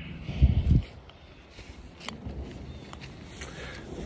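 Footsteps on dry leaf litter and twigs, a scattered series of soft steps and snaps. About half a second in, a short, loud low rumble on the phone's microphone.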